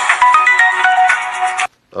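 A phone ringtone playing a melody of short stepping notes. It cuts off suddenly near the end as the call is answered.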